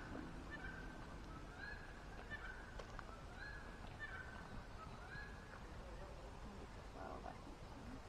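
A bird calling faintly: a run of short, level notes, about two a second, that stops about five seconds in.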